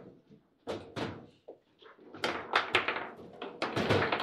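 Table football in play: a string of sharp knocks as the ball is struck by the figures and bangs against the table, with the rods clacking. The knocks come thicker from about halfway through.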